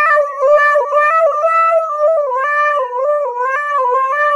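A husky howling into a karaoke microphone: one long, unbroken howl whose pitch wavers up and down.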